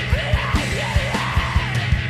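Loud heavy rock band recording with distorted guitars, a kick drum beating about five times a second, and yelled vocals.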